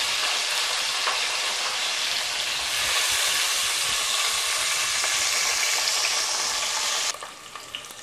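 Freshly added sliced onions and green chillies sizzling in hot oil in a pressure cooker, a steady hiss. About seven seconds in it drops suddenly to a much fainter sizzle.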